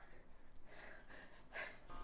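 Near quiet room, with a faint breath drawn in about a second and a half in.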